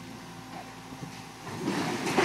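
Terex TC50 mini excavator's diesel engine running steadily while its arm moves, with a louder, rougher surge of noise from about one and a half seconds in.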